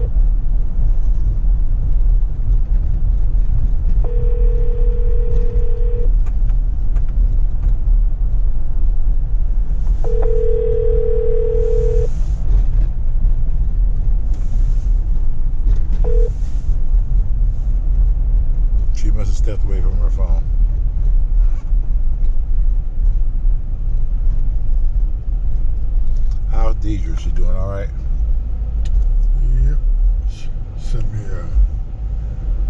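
Low road and engine rumble inside a moving car's cabin. Over it a telephone ringback tone rings three times, each ring about two seconds long with four-second gaps, while an outgoing call waits to be answered. A short beep follows about 16 seconds in.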